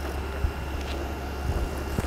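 Generator engine running with a steady low drone.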